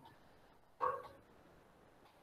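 A single short, pitched, bark-like animal call about a second in, against faint room tone.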